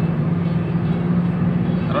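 Steady in-cabin drone of a 2010 Honda Jazz's four-cylinder petrol engine and road noise, cruising in fifth gear at an even pitch.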